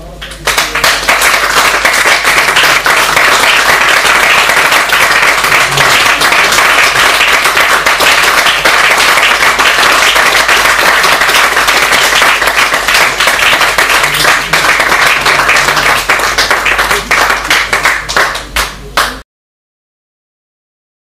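Audience applause, close and loud, starting about half a second in, thinning to scattered claps over the last few seconds and cutting off abruptly just before the end.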